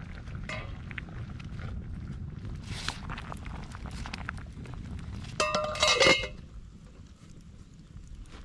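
Wood campfire crackling under a hanging metal cooking pot, with a loud metallic clanking and ringing from the pot and its wire bail handle a little over five seconds in, as the pot is lifted on its pole.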